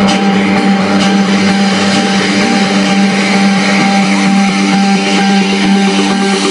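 Loud, heavily distorted music played from a car's sound system, with a steady low drone under it.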